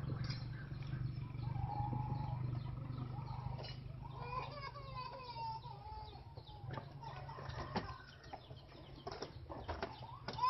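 A bird calling in the background for a second or two near the middle, its pitch wavering and falling, over a low steady hum in the first few seconds, with scattered sharp clicks.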